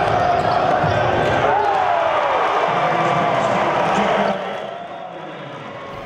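Live arena sound of a basketball game: a basketball bouncing on the hardwood court under crowd noise and voices, which drop off about four seconds in.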